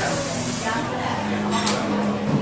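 Background chatter of a busy café, with a short burst of hiss at the start that fades within about half a second and a sharp click near the end.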